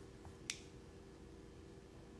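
A single short, sharp click about half a second in, over quiet room tone with a faint steady hum.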